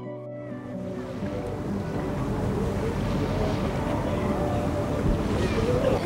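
Sea waves rushing, fading in and growing steadily louder under soft background music.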